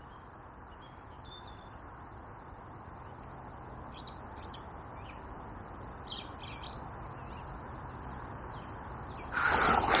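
Small birds chirping in short, high calls over a steady background hiss, with a quick run of four rising chirps about a second in and more scattered chirps later on.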